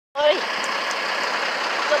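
A steady rushing noise, with a man's voice heard briefly near the start and again at the end.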